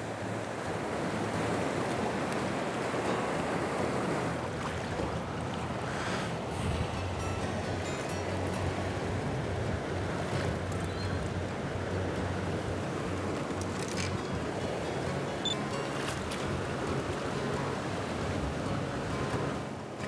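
Fast river current rushing along a gravel shore, a steady watery rush, with a few brief splashes as a trout is handled in the shallow edge water.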